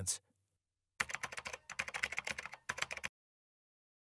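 Computer keyboard typing sound effect: a quick run of key clicks lasting about two seconds, starting about a second in, then silence.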